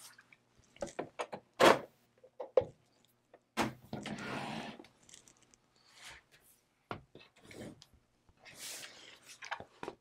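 Handling noise: scattered clicks and light knocks from a metal rotary leather hole punch being turned over in the hands and leather earring pieces set down on a tabletop, with two brief rustles about four and eight and a half seconds in.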